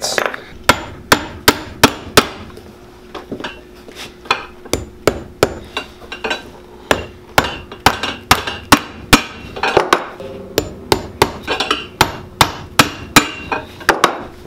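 Light hammer strikes driving small nails through a metal heel plate into a stacked leather boot heel. The strikes come in quick runs of sharp taps, a few a second, throughout.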